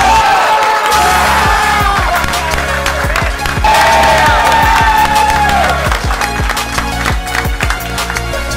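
Background music with a steady beat, with a team cheering and clapping under it.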